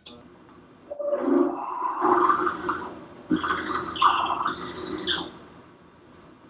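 Half-inch drill bit in a vertical milling machine cutting into an aluminum block, fed down in short pecks. The cutting sound starts about a second in and comes in surges with brief breaks, then stops near the end.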